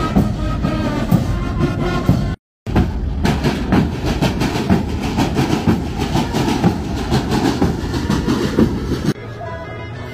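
Marching band of brass and drums playing, with heavy drumming throughout. The sound drops out for a moment about two and a half seconds in, and falls to quieter music about a second before the end.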